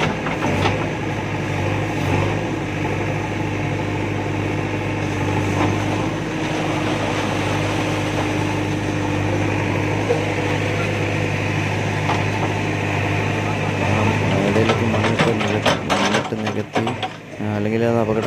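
Backhoe loader's diesel engine running steadily at a constant pitch. A voice and a few knocks come in over it for the last few seconds.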